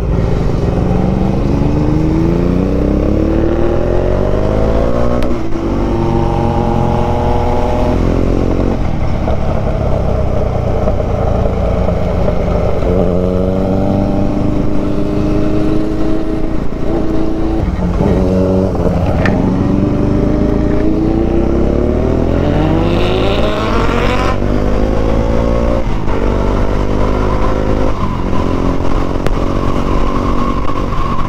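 Motorcycle engine accelerating hard through the gears: its pitch climbs in several pulls, each one dropping back at an upshift, over steady road and wind rush.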